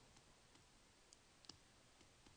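Faint computer mouse clicks, four or five short clicks spaced unevenly through near silence, the clearest about one and a half seconds in.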